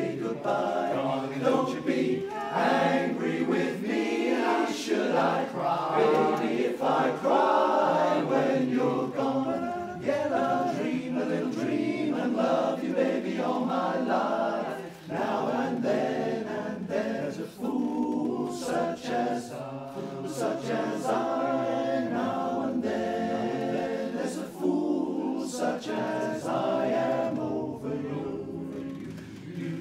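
Male barbershop chorus singing a cappella in four-part close harmony, sustained phrases with brief breaks between them.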